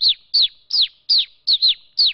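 A man imitating a male house sparrow with his voice: a quick run of about seven short, high chirps, each falling in pitch.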